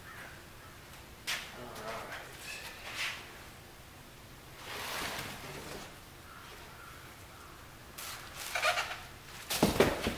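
Plastic wrapping and a cardboard box rustling in short bursts as an aluminum radiator is lifted out of its shipping box. The loudest burst comes near the end.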